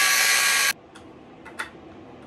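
Cordless angle grinder with a cutoff wheel slicing through a lock washer on a bolt, a steady whine with grinding that cuts off abruptly less than a second in; a single faint click follows. The washer is being cut away to free a seized bolt without damaging the bolt head.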